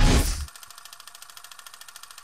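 Sound design of a program intro bumper: a loud whoosh right at the start, then a quiet, fast, even ticking rattle that runs on steadily after it.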